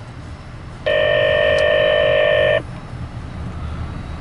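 A steady electronic signalling tone, DTMF-type, comes over a scanner tuned to railroad radio. It starts abruptly about a second in and cuts off about two seconds later, over a low rumble.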